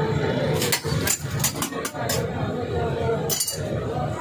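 Metal spatula clinking and scraping on a steel griddle plate: a quick run of sharp clinks through the first half and another cluster near the end, over a steady background hum.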